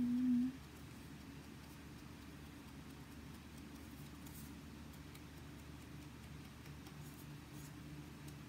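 Quiet room with a steady low hum, and a few faint soft taps from a sponge dauber dabbing ink onto paper edges.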